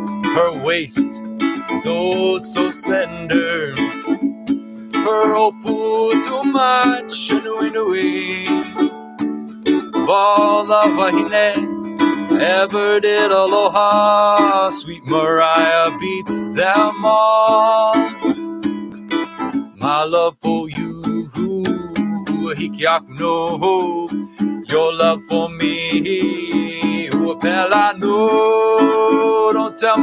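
Ukulele strummed and picked in a Hawaiian-style song, with a man singing over it.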